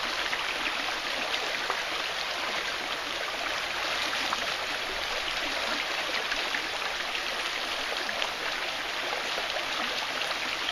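Shallow river running steadily over rocks in a riffle: a constant, even rush of water.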